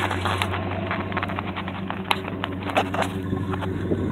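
1969 Buick Electra's V8 idling steadily, a low even hum, with scattered light clicks and scuffs over it.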